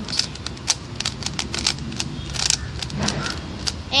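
Plastic 3x3 Rubik's cube being turned by hand: an irregular run of sharp clicks and clacks as the layers are twisted.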